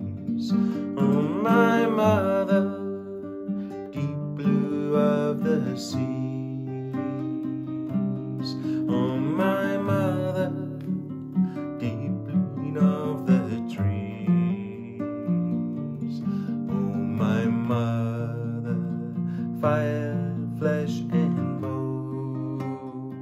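A man singing a slow song to his own strummed acoustic guitar, the sung phrases separated by short stretches where the guitar carries on alone.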